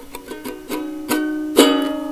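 Lo-fi folk music: a small acoustic string instrument strummed several times, the loudest strum about a second and a half in, ringing on.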